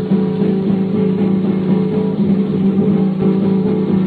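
Flamenco guitar playing on an old shellac 78 rpm record, the sound narrow and muffled with nothing above the upper-middle range.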